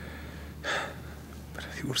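A man's sharp intake of breath, a single gasp about two-thirds of a second in, laboured from injury and exhaustion as he speaks with effort between phrases.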